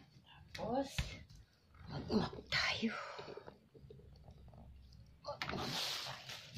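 Indistinct, unintelligible voice in short phrases, with a brief rushing hiss near the end.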